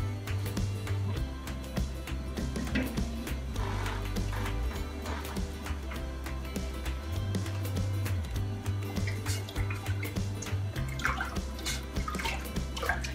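Background music with a steady bass line. Under it, light clicks and liquid sounds of a spatula stirring salt brine in a metal saucepan.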